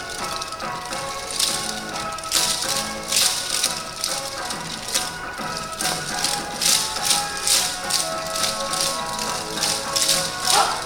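Yosakoi dance music with many naruko, the wooden hand clappers of yosakoi dancers, clacking together in time with the beat; the clacks start about a second and a half in.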